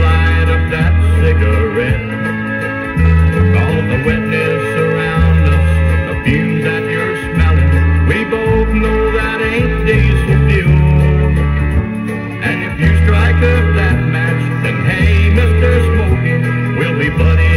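Instrumental passage of a 1970s country song played from a 7-inch vinyl single and recorded direct from the turntable. Strong low notes step from one to the next every second or so under the band.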